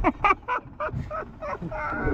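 Men laughing hard, a quick run of short bursts of laughter, over a low rumble.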